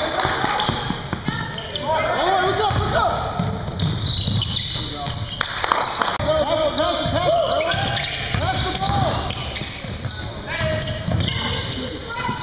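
Pick-up basketball game on a hardwood gym floor: sneakers squeaking in many short, rising-and-falling chirps, the ball bouncing and players calling out, all echoing in the large gym.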